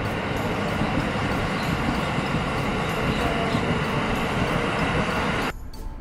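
A train passing close by, a steady loud rush of noise that cuts off suddenly near the end.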